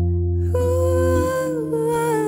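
Slow electronic pop music: low sustained electric keyboard chords, with a female voice entering about half a second in on one long wordless held note that slips down a little near the end.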